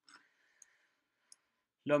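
A few faint, scattered clicks of a computer mouse.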